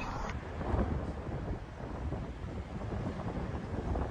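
Wind buffeting the microphone: a steady, fluctuating low rumble with no distinct event.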